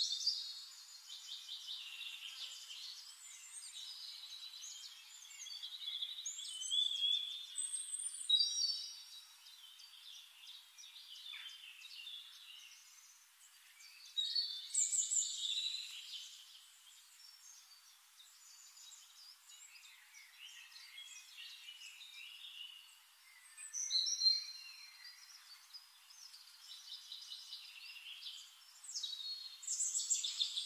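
Birdsong: several small birds chirping, whistling and trilling in overlapping phrases that swell and fade every few seconds. The sound is thin, with no low end at all.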